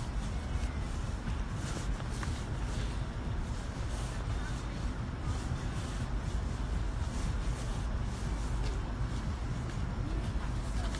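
Steady low rumble with faint irregular rustling: wind and handling noise on a hand-held phone microphone carried while walking outdoors.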